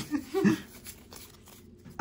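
A short laugh, followed by faint ticks and slides of Pokémon trading cards being handled and flipped through.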